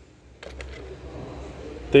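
Steady background noise with a low hum, starting about half a second in, with a few faint clicks.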